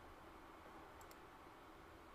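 Near silence with a faint steady hum, and two faint clicks in quick succession about a second in.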